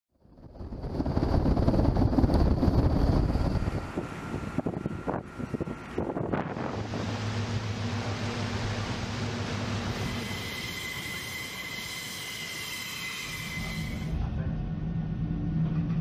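Boat engines and wind at sea, changing every few seconds. A loud rumble runs for the first few seconds, followed by a few sharp knocks. Then comes a steady engine drone, then a higher whine over a rushing hiss, and a lower drone again near the end.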